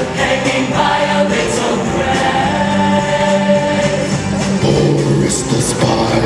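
A large mixed show choir singing together in harmony, holding sustained chords.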